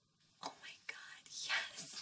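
A woman's breathy, whispered "oh" and short gasping breaths of astonishment, starting about half a second in.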